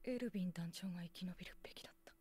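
Quiet Japanese anime dialogue: one soft, youthful voice speaking a short line, with a faint steady hum underneath.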